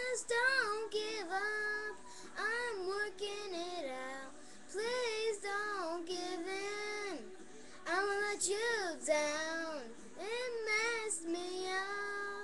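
A young girl singing a pop song, her voice sliding up and down in pitch in short phrases with brief breaths between them.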